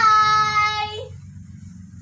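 A young girl calling a drawn-out, sing-song "bye", held on one steady high note for about a second with a small lift at the end, followed by a faint low hum.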